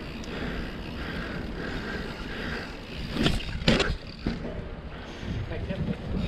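Mountain bike rolling over asphalt, with steady tyre and wind rumble, then two sharp knocks about three seconds in and a smaller one soon after.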